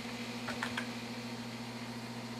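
A few computer keyboard keystrokes, a quick cluster of light clicks about half a second in, as a password is typed, over a steady low electrical hum.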